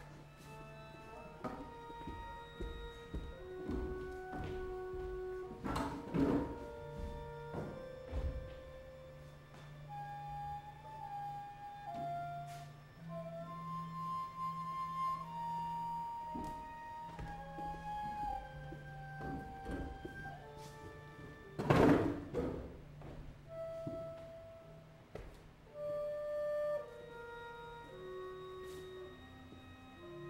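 Sparse contemporary chamber-ensemble opera music without voices: single held notes step from pitch to pitch over a steady low note, broken by loud sharp percussive strikes about six seconds in and again, loudest, about twenty-two seconds in.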